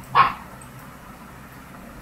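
A single short, sharp, bark-like call just after the start, then faint steady room noise.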